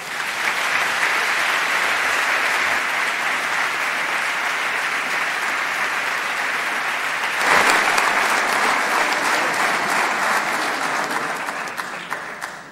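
Audience applauding, a large crowd clapping; the applause swells louder about seven and a half seconds in, then dies away near the end.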